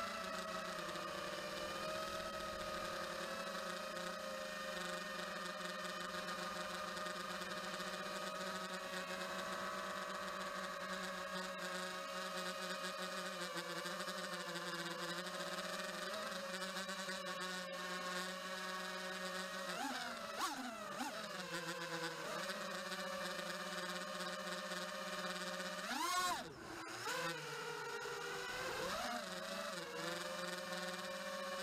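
The brushless motors and propellers of an Eachine Wizard X220 racing quadcopter, whining steadily in flight. The pitch swoops sharply up and back down twice in the last third as the throttle changes.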